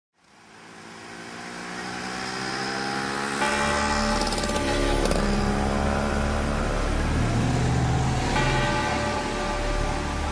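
Church bells ringing, with fresh strikes about three and a half, five and eight seconds in and long ringing tones between, over a steady noisy background that fades in from silence at the start.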